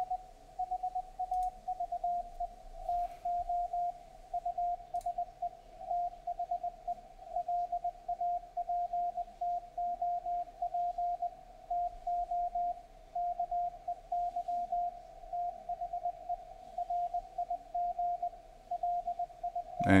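Amateur-radio Morse code (CW) signal on the 40-metre band, heard through an SDRplay receiver running SDRuno: a tone of about 700 Hz keyed on and off in dots and dashes. It is a readable transmission that the MultiPSK decoder copies as plain text.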